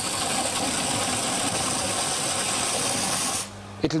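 Hansen hose spray nozzle jetting water under pump pressure: a loud, steady hiss that cuts off suddenly near the end.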